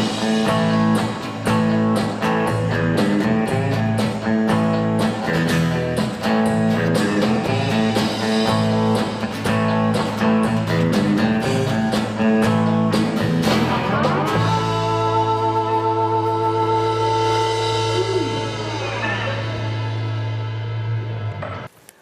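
Live rock band of electric guitar, bass guitar and drum kit playing the end of a song to a steady drumbeat. About two-thirds of the way through the drums stop and the band holds a final chord that rings and slowly fades, then cuts off just before the end.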